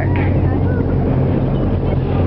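Whale-watching boat's engine running with a steady low hum under a constant hiss.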